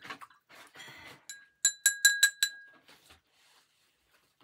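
Paintbrush rinsed in a glass jar of water, a brief swish and then five or six quick clinks of the brush tapping the jar, each ringing briefly like struck glass.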